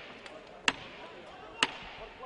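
Two sharp knocks about a second apart, part of a steady series of knocks at about one per second, over faint arena background.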